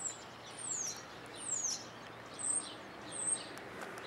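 A small songbird calling: five high, short notes spaced under a second apart. The first three slide down in pitch and the last two are brief and level.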